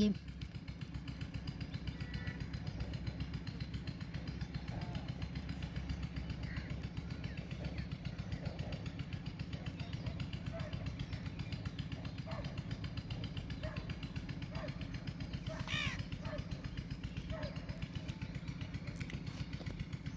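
A small engine running steadily in the background, a low rumble with a fast, even pulsing.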